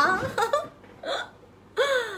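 A woman's brief laughter: a few short breathy bursts, then one drawn-out vocal sound falling in pitch near the end.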